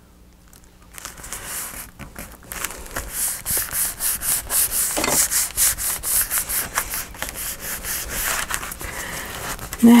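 A hand rubbing over a paper journal page in quick repeated strokes, smoothing the paper down.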